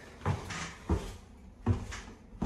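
Footsteps going down a staircase: three thuds about two-thirds of a second apart.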